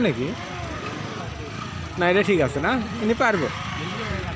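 A man's voice calling out, briefly at the start and again about two seconds in, over the low steady running of a small motorcycle engine.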